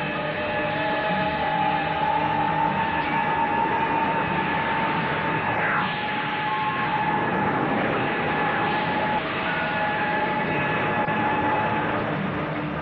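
Dramatic television background score: sustained synthesizer tones held over a dense rushing noise, with a brief swooping sound effect about six seconds in.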